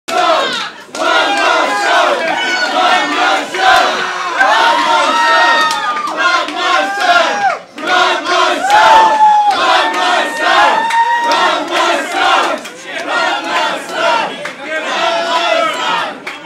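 A crowd of many people yelling and screaming at once, their voices overlapping in long, arching shouts, with two brief dips in the din.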